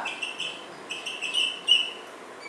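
Marker squeaking on a whiteboard as it writes: a quick run of short, high squeaks, the loudest near the end.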